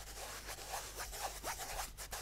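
Fingers rubbing and scratching the woven fabric cover of a Seagate Backup Plus Ultra Touch external hard drive held close to the microphone: an irregular rasping made of many small scratches.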